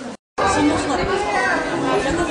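Crowd chatter: many people talking at once. It follows a sudden brief gap in the sound just after the start.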